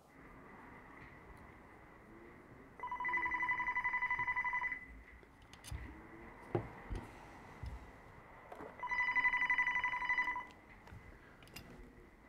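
Telephone ringing twice, each ring about two seconds long with a fast warbling pulse, about four seconds apart: an incoming call, answered after the second ring. A few faint knocks fall between the rings.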